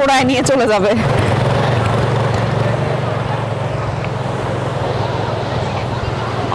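Strong wind blowing across the microphone: a steady rushing noise with a constant low rumble.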